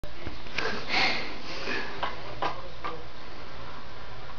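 A few scattered sharp clicks and clacks from a handheld can opener being fiddled with on a can, with a short breathy sound about a second in.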